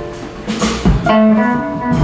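Electric guitar playing a blues lead live with the band, single notes with a few bent notes about a second in.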